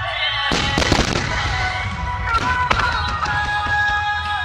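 A quick cluster of aerial firework shells bursting, several sharp bangs in rapid succession about half a second in and a few more near the three-second mark, over recorded music with singing from the display's loudspeakers.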